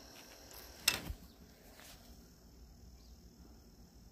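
Quiet room tone with a faint, steady high-pitched whine, and a single sharp click about a second in.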